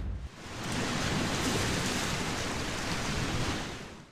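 Sea surf washing on a shore: a steady rushing noise that fades in over the first half second and fades out near the end.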